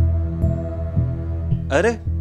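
Tense dramatic background score: a low droning hum pulsed by a heartbeat-like thump about twice a second, under a held higher note. Near the end a man calls out "arey".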